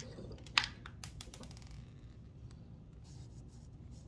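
Close handling noise of a phone and a medal being picked up: fingers rubbing and scraping, with one sharp click about half a second in and a few lighter clicks after.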